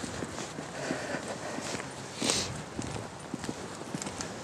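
Footsteps of a person walking on wet paving, a steady run of light steps. A brief hiss comes about halfway through.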